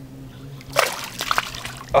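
Water splashing as a small bass is let go by hand and kicks away, with a short burst of splashing about a second in.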